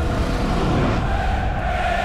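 Intro soundtrack: a held music chord gives way to a loud, dense rushing noise, like a transition sound effect.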